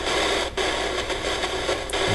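Steady radio-like static hissing from a phone's ghost-hunting app, broken by a few brief dropouts.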